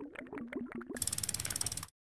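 Animated end-card sound effects: a quick run of clicks over a low stepping tone, then a fast ratcheting rattle that cuts off suddenly.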